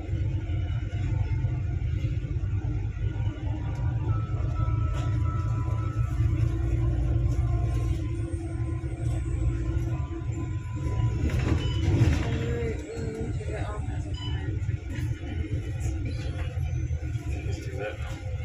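Steady low rumble of a bus's engine and road noise heard from inside the cabin, with indistinct voices in the background.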